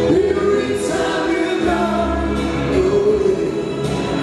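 Live pop-rock music from a duo: electric guitar and keyboards, with singing carried over a steady bass line.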